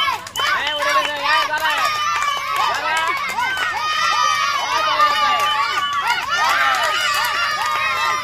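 A group of children shouting, cheering and laughing, many high voices overlapping, with a few long drawn-out calls.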